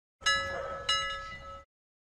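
Two bell-like chime strikes about two-thirds of a second apart, each ringing on and fading, then cut off short: a logo sting sound effect.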